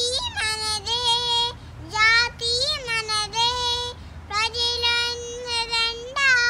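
A small child singing a Telugu patriotic song unaccompanied, in short phrases with brief gaps between them and a long held note near the end.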